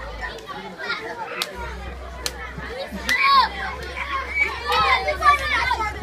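Many schoolchildren talking and shouting at once, their high voices overlapping, getting louder in the second half, with two sharp clicks in the first half.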